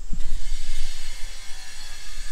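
Steady high hiss of background ambience over a constant low rumble.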